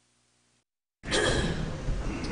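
Faint room hum, then the sound drops out to dead silence, and about a second in it cuts back in abruptly, loud and noisy with voices in it: a break and splice in the recording.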